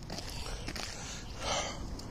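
Quiet outdoor background noise picked up by a handheld phone microphone, with a low rumble from wind and handling, and a soft rushing hiss swelling briefly about one and a half seconds in.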